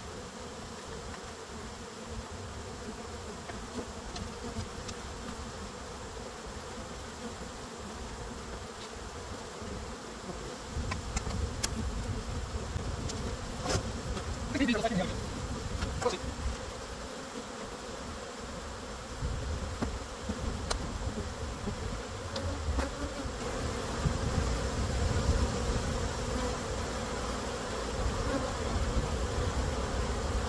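Honey bees from an opened swarm trap buzzing steadily as their frames are handled. A few sharp knocks of the wooden frames and hive tool stand out, and the buzzing and handling noise grow louder from about eleven seconds in.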